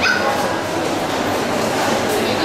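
A dog yipping once, briefly, right at the start, over the chatter of the hall.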